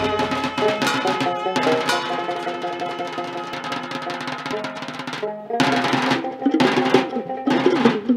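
Rajbanshi folk band instrumental music: drums played in fast, rapid strokes under steady held melodic tones. A little past halfway the music briefly drops away, then the ensemble comes back with strong accented strikes about once a second.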